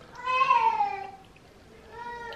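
A woman's single high vocal sound, lasting about a second and falling in pitch, given as a reaction while she tastes food from a spoon.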